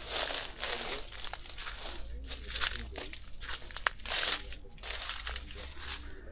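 Leaves rustling and crackling as lychee branches are handled and brushed close to the microphone, in irregular bursts with small sharp snaps.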